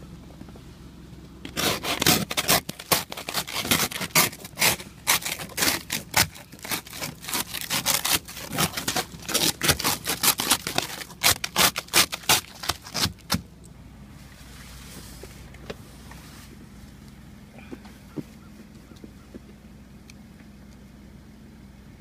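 Plastic ice scraper chipping and scraping thick ice off a Jeep Wrangler's side window in rapid, loud strokes, stopping a little past halfway through. A vehicle engine idles steadily underneath the whole time.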